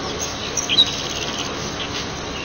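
Birds chirping, with a cluster of short high notes about half a second in, over a steady background hiss.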